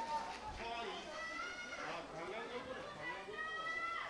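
Faint, distant voices of footballers calling and shouting to one another on the pitch.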